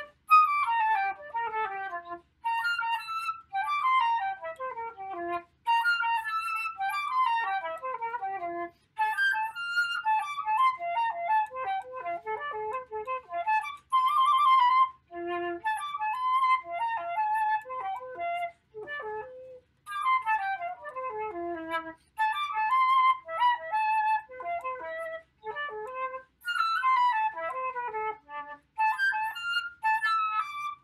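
Unaccompanied concert flute playing a fast étude: quick runs of notes, many falling from high to low, in phrases broken by short pauses.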